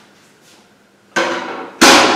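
Two sharp knocks against a whiteboard, the second louder, each with a short ring as the board panel resonates.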